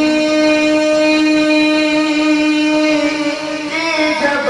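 A man's voice holding one long, steady sung note in a devotional chant, wavering and falling away near the end.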